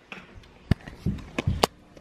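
Handling noise at a window: three sharp clicks, the first the loudest, with a couple of soft thumps between them.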